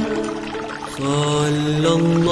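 Selawat chanted slowly on long, wavering held notes. A brief lull is followed by a new sustained note about a second in.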